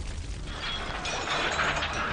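Fire crackling, growing denser and louder from about half a second in, over a low rumble.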